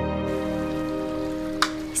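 Television theme music ending on a long held chord, with the sound of running water in a shallow stream fading in underneath. A sharp click about one and a half seconds in as the music stops, and a voice begins at the very end.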